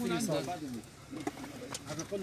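Low, muffled voices talking quietly after louder speech fades out, with a couple of faint sharp clicks.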